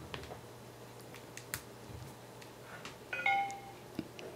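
A Windows PC's short two-note device-connect chime, about three seconds in, as the USB cable is plugged into the Samsung Galaxy S in download mode and the computer recognises the phone. A few faint clicks come before it.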